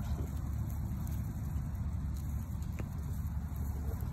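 Steady low outdoor rumble with one faint click about three seconds in.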